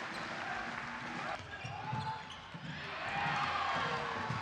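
Live basketball game sound in a sports hall: a ball bouncing on the hardwood court, with players' and spectators' voices around it.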